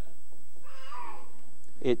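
A brief, faint, high-pitched vocal sound with a falling pitch, under a second long, over a steady low hum.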